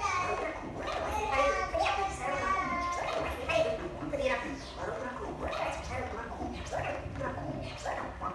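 A woman's wordless improvised vocalizing into a microphone: quick, broken voice sounds that slide up and down in pitch, with no words.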